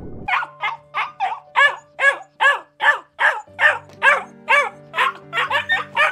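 A dog barking in a rapid series, about three barks a second, the barks coming closer together near the end, over soft sustained music notes.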